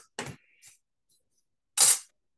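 A short scrape near the end, the loudest sound here, of a wooden ruler being slid across a sheet of paper. A fainter brief rustle comes just after the start.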